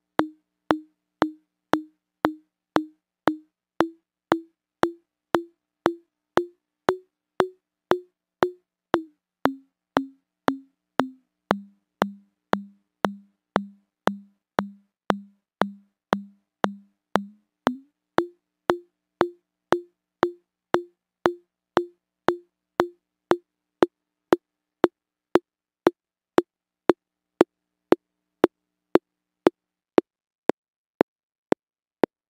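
Brief electronic clicks repeating a little under twice a second, each one ringing into a short pitched note through a sharply resonant equalizer boost, which simulates a room's modal ringing. The pitch of the ring drifts up, drops lower around the middle, jumps back up, and in the last few seconds the ringing shortens to a bare click as the filter's Q is lowered.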